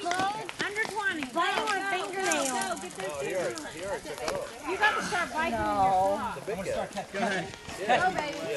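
Spectators' voices talking and calling out at once, indistinct chatter with no clear words.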